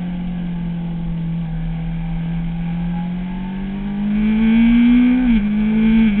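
Kawasaki ZX-6R inline-four engine running at high revs on track, heard from the bike itself. Its pitch holds steady for a few seconds, then climbs and grows louder under acceleration, then drops sharply about five seconds in at a gear change.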